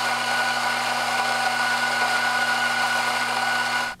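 Electric espresso grinder motor running steadily as it grinds coffee beans into a portafilter, with a steady hum and whine; it cuts off suddenly just before the end.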